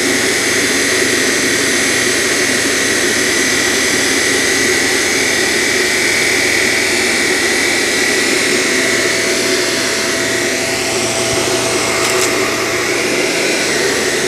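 Shark Apex Powered Lift-Away DuoClean with Zero-M upright vacuum running on a low-pile rug, a steady high motor whine over a rush of air as it sucks up pet hair.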